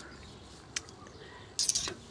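A pause with faint, steady background noise, a single soft click about three-quarters of a second in, and a short hiss near the end.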